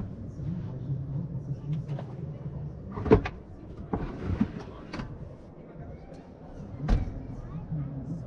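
Clicks and knocks of a swivelling washroom basin and its cupboard flap being handled and swung aside, with four sharp knocks, the loudest about three seconds in and another near the end, over a low murmur of voices.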